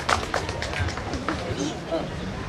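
Low, indistinct voices with several short knocks and clicks in the first second or so.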